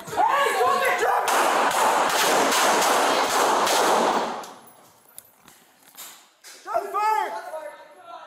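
Rapid volley of police gunfire from a handgun and a patrol rifle, about three seconds of quick shots mixed with shouting, heard loud and crushed through a body camera's microphone; it stops suddenly about four seconds in. Shouted commands come just before it.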